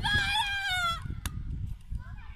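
A high-pitched voice lets out one drawn-out shout, held about a second and falling slightly in pitch. A short sharp click follows, with wind rumbling on the microphone throughout.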